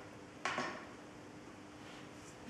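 A brief rustle of a thin paper picture book's pages being handled and turned by a chimpanzee, about half a second in, over a faint steady hum.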